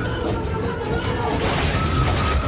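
Action-footage sound effects: a loud, continuous crash and rumble as a wall gives way in a breach, with music mixed underneath.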